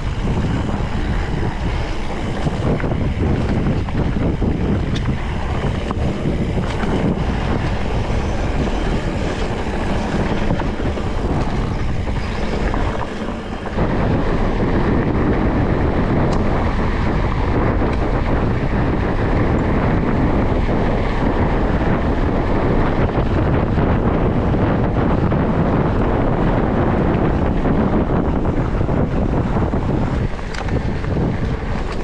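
Wind rushing over the action camera's microphone while riding an electric mountain bike on a dirt trail, mixed with tyre rumble and rattle from the bike. There is a brief dip about a third of the way in, then a steadier, slightly louder rush.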